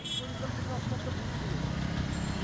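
Excavator's diesel engine running with a steady low rumble, faint voices in the background.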